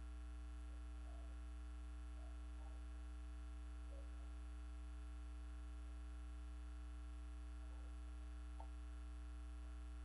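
Steady low electrical mains hum in the microphone's sound system, with only a few faint scattered sounds above it.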